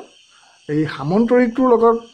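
A man speaking, starting after a short pause, over a steady high-pitched insect chirring in the background.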